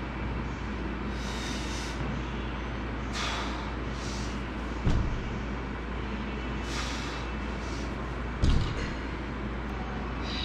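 Deadlifting: a barbell loaded with rubber bumper plates thuds onto the gym floor twice, about five and eight and a half seconds in. Short breaths come between the lifts, over a steady background hum.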